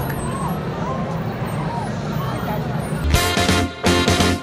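Street crowd noise: a hubbub of voices over a steady low rumble. About three seconds in it cuts to a loud music sting with hard drum hits.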